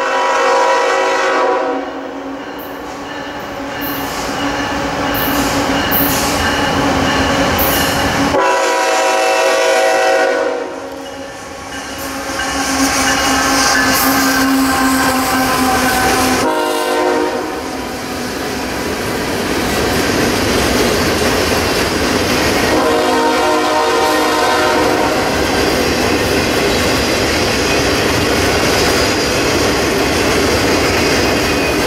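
Freight locomotive's multi-chime air horn sounding four blasts, long, long, short, long, the grade-crossing signal, as the train comes up and passes. Between and after the blasts the locomotive and a string of boxcars and tank cars roll by with a steady rumble and wheel clatter on the rails.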